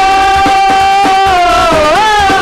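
Live band music: one long high note held over a steady drum beat, dipping in pitch and sliding back up near the end.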